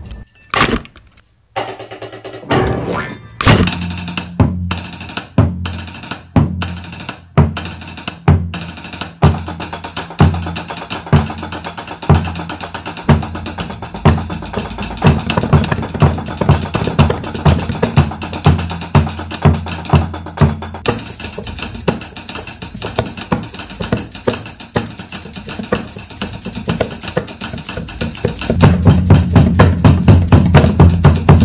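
Percussion ensemble of concert bass drum, sticks on metal pots and pans, and hand percussion playing a steady beat of about one and a half strokes a second. It comes in after a brief pause near the start, a dense high rattle joins about two thirds of the way through, and the bass drum strokes grow much louder near the end.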